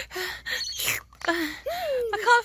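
A woman's voice making breathy gasps and mouth noises for a doll being made to drink from a toy cup, then a wordless whiny vocal sound, rising then falling, in the second half.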